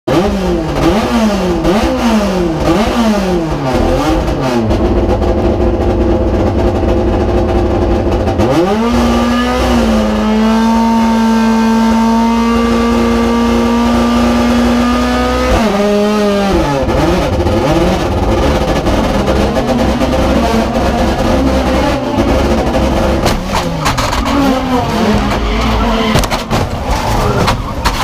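Touring race car's engine heard from inside the cockpit at a standing start: the throttle is blipped up and down several times, then held at a steady high rev for about six seconds. The revs drop suddenly and the engine then climbs and falls unevenly through the gears, with knocks near the end as the car is caught in the pile-up.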